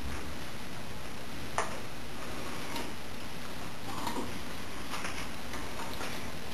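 Steady fizzing hiss of an HHO electrolysis cell making gas, with a sharp click about one and a half seconds in and a few faint taps after it.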